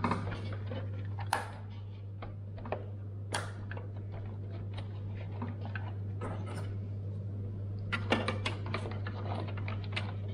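Scattered clicks and taps of plastic and metal parts handled inside a desktop PC case as a HyperX RAM stick is fitted into its motherboard slot, with a cluster of sharp clicks about eight seconds in. A steady low hum runs underneath.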